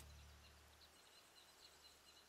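Near silence: a faint hiss with a few faint short high tones.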